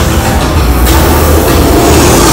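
Roller coaster train rolling along its track into the loading station, the rolling noise growing louder near the end as the train arrives.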